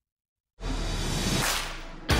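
About half a second of silence, then a whoosh sound effect that starts suddenly, sweeps through and fades away near the end, a produced transition into the intro music.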